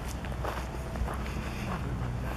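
Footsteps of a person walking on a path covered in dry pine needles, soft crunching steps about two a second.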